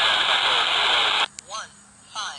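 Baofeng BF-F8+ handheld radio's speaker hissing with static while tuned to the SO-50 amateur satellite's weak FM downlink. A little past halfway the hiss cuts out suddenly, leaving a faint voice coming through.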